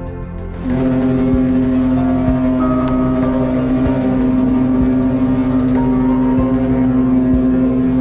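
Cruise ship's horn sounding one long, steady blast that begins just under a second in and holds to the end. It is the greeting exchanged between two sister ships sailing out together.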